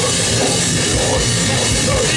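Grindcore band playing live at full volume: heavily distorted guitars over fast, pounding kick drums and cymbals, thick and unbroken.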